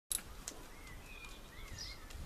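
Faint bird song: thin, wavering whistles over a low outdoor rumble, with a sharp click at the very start.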